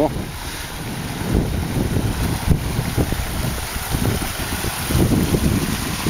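Wind buffeting the microphone in uneven low gusts, over the steady rush of a shallow stream running across bare rock.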